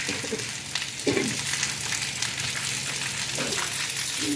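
Steady hiss of rain falling on a wet tiled surface.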